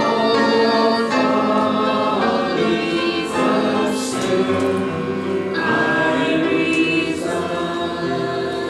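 Church congregation singing a slow hymn together, with long held notes.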